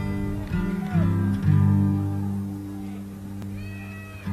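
Music: acoustic guitar playing, with sustained low notes and plucked strings.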